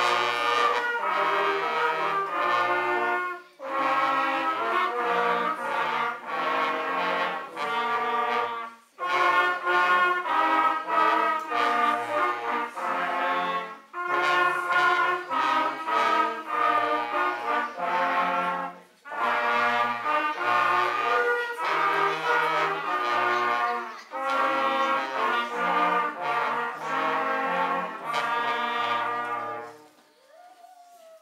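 Small brass ensemble of children and adults, with trumpets, tenor horns, baritones and a trombone, playing a tune in phrases of about five seconds with short breaks between them. The piece ends just at the close.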